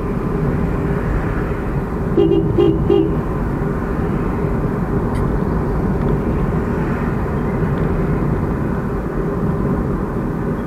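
Steady road and engine rumble heard inside a moving car, with a vehicle horn giving three quick toots about two seconds in.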